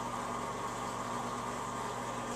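Aquarium water pumps running: a steady hum with an even hiss over it.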